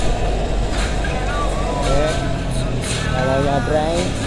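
Steady low wind and road rumble from riding along a road with motor traffic passing, under background music with a singing voice that carries a smooth, drawn-out melody.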